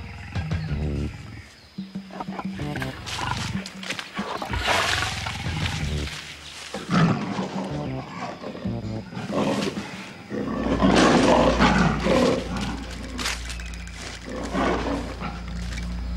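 A lion roaring in several bouts over background music, the longest and loudest roar about eleven seconds in.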